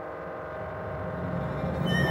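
Contemporary chamber-orchestra music: a sustained, many-toned chord that swells steadily louder, with higher tones entering near the end.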